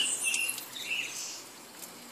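Live steam injector feeding a small boiler at low steam pressure, about 10 psi, running with a steady hiss that fades, with a few short high chirps in the first second.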